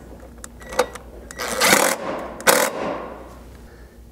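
Cordless impact driver with a 13 mm socket hammering a flanged metric bolt tight on a rock slider mount: one burst of about half a second, then a shorter burst as the bolt seats.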